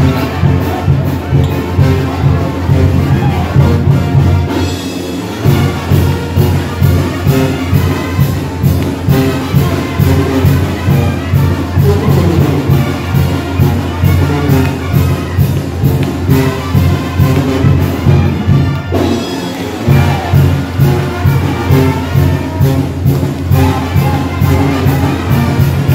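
A live brass band (Oaxacan banda de viento) plays a chilena with a steady, driving dance beat, trumpets and trombones over a pumping low brass part. The low notes drop out briefly about five seconds in and again near nineteen seconds.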